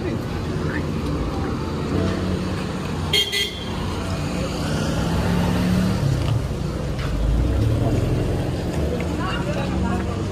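Street traffic with engines running, and a short vehicle horn toot about three seconds in, the loudest sound here.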